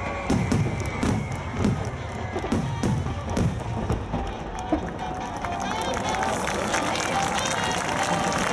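No. 5 (15 cm) aerial firework shells bursting in quick succession, deep booms about twice a second, as the rapid barrage ends about halfway through. After that, the crowd of onlookers cheers and talks.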